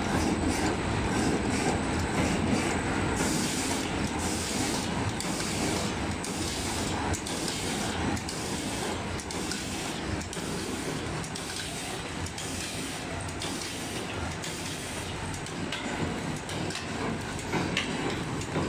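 Automatic blister cartoning machine running: a steady mechanical clatter from its conveyors and pushers, with short hisses repeating through the middle stretch.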